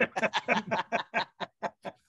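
A man laughing: a quick run of short chuckles, about five a second, fading out toward the end.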